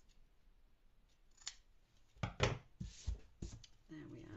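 Scissors snipping off ribbon and linen-thread ends: a single snip about one and a half seconds in, then a quick run of sharper snips and knocks over the next second and a half.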